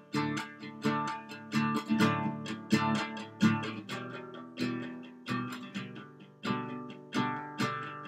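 Acoustic guitar strumming chords with no voice, a new strum about every two-thirds of a second, each ringing and fading before the next.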